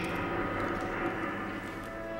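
Soundtrack effect of the fueled Saturn V rocket standing on the launch pad, played over theatre loudspeakers: a steady low rumble and hiss with a few faint clicks.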